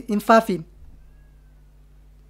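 A man's voice speaking one short word for about half a second, then a pause with only a low steady hum.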